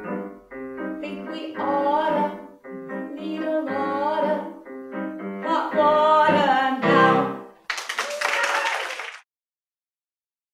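The last phrases of a song: a woman singing long notes with vibrato over electric keyboard chords, ending about seven seconds in. A short burst of audience applause follows and cuts off abruptly.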